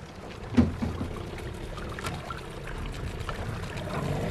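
Water sloshing and lapping against a small boat's hull over a low rumble, with one sharp knock a little over half a second in.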